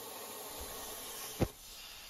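Plasma cutting torch on a CNC plasma table cutting steel plate: a steady hiss, with a short knock about one and a half seconds in, after which it goes quieter.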